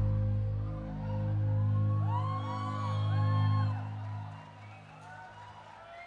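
A band's closing chord, a low sustained tone, rings out and fades away about four seconds in, while audience members whoop and cheer over it with rising and falling calls. Only faint crowd noise is left near the end.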